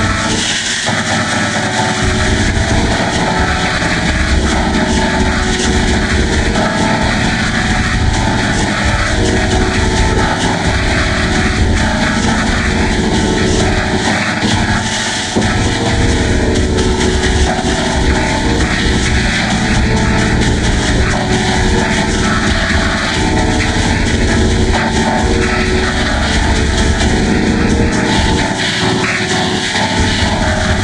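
Loud, heavily effect-distorted audio of a children's karaoke song, warped into a dense, steady drone with no clear tune or words. It dips briefly about halfway through.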